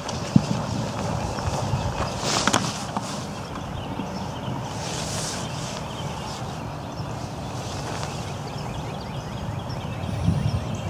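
Wind rumbling on the microphone over open-air background noise, with one sharp knock about a third of a second in.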